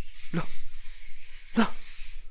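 A dog barking twice, two short barks each falling sharply in pitch, about a second apart.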